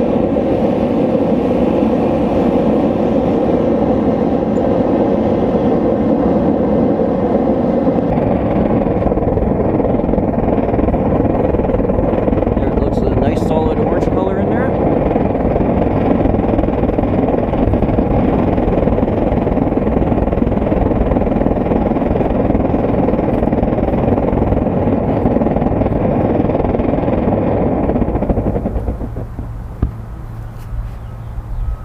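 Propane gas forge burner running steadily with a loud, even rushing noise; the level drops sharply near the end.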